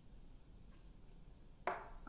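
Faint handling sounds of paper and a glue stick over a quiet room, with a few soft ticks. A woman starts speaking near the end.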